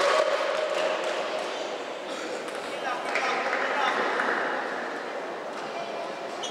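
Indistinct crowd murmur and voices echoing in a large indoor sports hall, loudest at the start and slowly easing.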